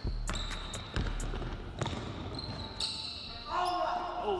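Basketballs bouncing on a gym floor in a few irregular bounces, with voices near the end.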